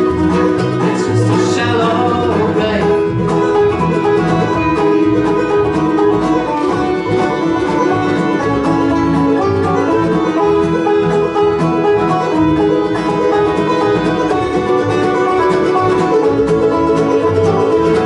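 Acoustic string band playing an instrumental break without vocals: banjo, acoustic guitars, mandolin, fiddle and upright bass, steady and loud throughout.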